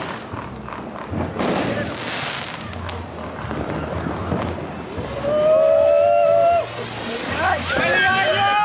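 Handheld cone fountain fireworks (volcancitos) spraying sparks, a rushing hiss with crackle and a few sudden bursts. About five seconds in, a loud held tone joins and becomes the loudest sound.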